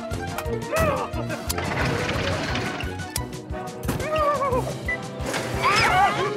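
Cartoon soundtrack: background music with a crash heard from about a second and a half in, and short wordless cartoon-character yelps, with more of them near the end.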